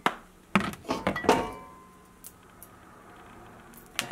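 Kitchenware knocked about at the stove: a click, then a quick run of knocks and clinks in the first second and a half, the loudest ringing briefly like metal. After that only a faint steady hiss of the lit gas burner remains.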